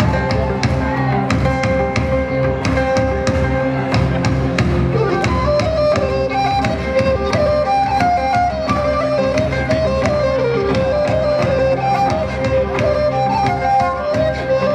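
Live Breton an dro dance tune played on a wind instrument and fiddle over a steady held drone note and an even, driving beat.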